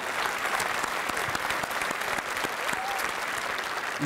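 Studio audience applauding steadily, a dense patter of many hands clapping.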